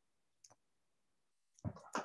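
Near silence, with one faint short click about half a second in, then a man's voice starting up near the end.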